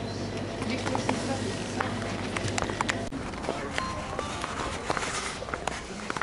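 Shop ambience: indistinct background voices over a steady low hum, with scattered clicks and rustles. The hum drops out about three seconds in, and footsteps and clicks go on after it.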